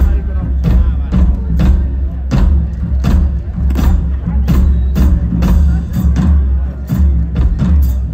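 Southern rock band playing live through a loud stage PA: a drum kit keeps a steady beat, about two to three strokes a second, under electric and acoustic guitars and heavy bass.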